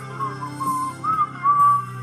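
A man whistling the melody in several short, sliding notes that end in a longer held note, over a backing track with guitar.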